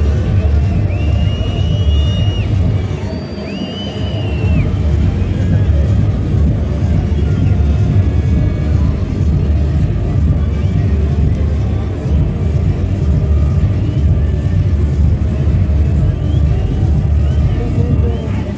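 Loud stadium ambience: bass-heavy music with a constant low rumble, mixed with crowd voices, and a couple of high-pitched drawn-out calls in the first few seconds.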